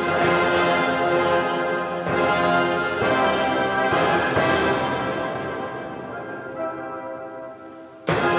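Concert band playing loud sustained brass chords, punctuated by five clashes of a pair of hand-held crash cymbals in the first half. After the last clash the chord and cymbals die away over the final few seconds, and a new clash lands right at the end.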